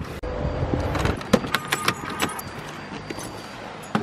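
Car keys jangling, with a run of light clicks and rattles about a second in.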